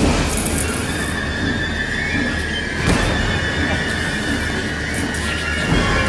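Horror film score: a low rumbling drone with a held, high, wavering tone above it that starts about a second in, and a sharp hit about halfway through and another near the end.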